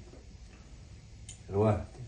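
A man's speech pausing for about a second and a half of low room tone, with a single faint click in the pause, then resuming with a word near the end.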